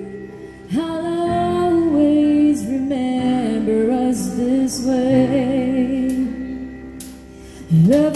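Live band ballad: a woman singing long held, bending notes into a microphone over electric guitar accompaniment. The phrase fades into a softer dip late on, and a new phrase starts just before the end.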